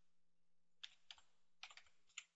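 Faint computer keyboard typing: a handful of short key clicks, scattered and then quicker toward the end.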